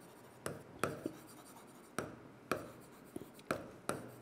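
Pen writing on an interactive whiteboard: a string of short, faint taps and scrapes as letters are written, irregularly spaced, about eight in four seconds.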